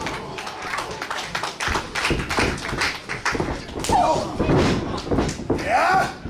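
Wrestling ring thudding and rattling under running feet and bodies hitting the mat, with scattered shouts from the crowd.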